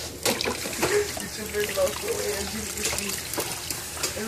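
Water trickling from a kitchen faucet into a stainless-steel sink, with small clicks and splashes.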